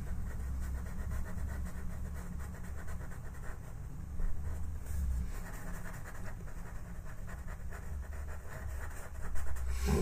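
A Faber-Castell Pitt pastel pencil scratching and rubbing faintly on pastel paper, over a steady low hum.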